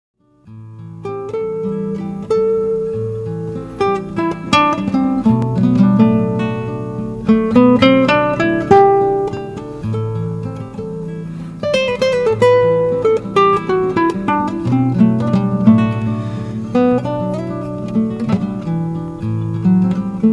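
Classical guitar played fingerstyle: an improvised passage of plucked notes over held low bass notes, starting about half a second in.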